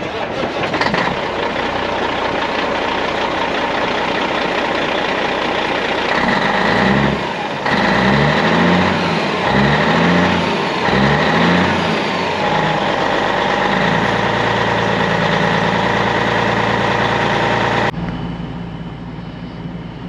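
Truck engine running under loud, dense road and cab noise. About midway the engine pitch rises and falls four times in quick succession, then settles into a steady drone that drops off suddenly near the end.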